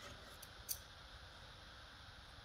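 Quiet cutting of a wedge of brie with a knife held against a fork on a wooden cheese board: two faint light clicks of the cutlery in the first second, otherwise near silence.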